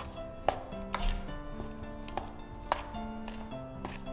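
A metal spoon knocking and scraping against a stainless steel mixing bowl while stirring batter: about half a dozen sharp clicks at irregular intervals. Soft background music with held notes plays under it.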